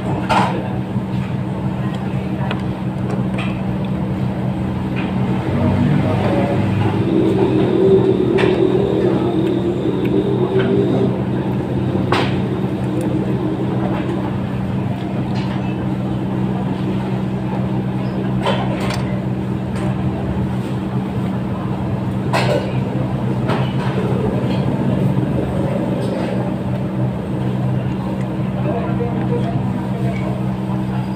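A steady low mechanical hum with several fixed pitches runs throughout. Faint voices come and go in the background, and a few sharp clicks sound about twelve, nineteen and twenty-two seconds in.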